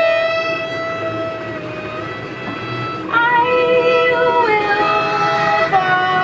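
Violin, bass clarinet and trombone playing long, sustained notes together. About three seconds in a louder, higher note enters, and the held notes step down in pitch together a second and a half later.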